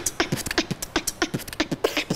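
Vocal beatboxing: drum sounds made with the mouth, a fast, even run of about six strokes a second, alternating low kick-drum thumps with sharp snare and hi-hat clicks. It is a demonstration of the basic beatbox sounds played at speed.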